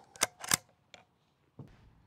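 Ruger Gunsite Scout bolt-action rifle being handled: two sharp clicks a quarter-second apart near the start, and a fainter click about a second in.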